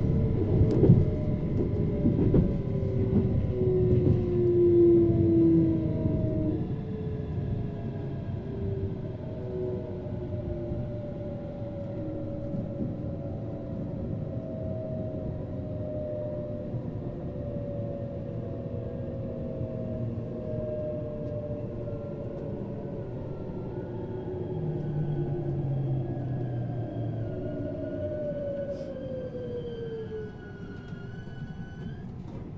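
Inside an E657-series electric limited express train braking into a station: wheels running on the rails under a whine from the traction motors that falls steadily in pitch as the train slows. The running noise is loudest and clatters in the first few seconds, then eases.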